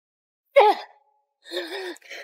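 A woman's short cry falling in pitch, then a strained, breathy groan near the end, as she struggles in a scuffle and is grabbed by the throat.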